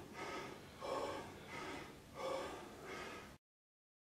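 A man breathing hard in heavy, gasping breaths, about five of them, one roughly every 0.7 s. He is winded after an exhausting leg-machine set. The sound cuts off suddenly a little over three seconds in.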